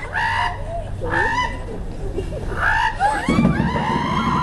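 A person imitating a hen: three short squawking calls about a second apart. Near the end, children's voices and general audience noise rise.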